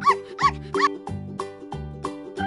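Zebra calling: three short, high, yelping barks in quick succession, each rising and falling in pitch, over keyboard background music.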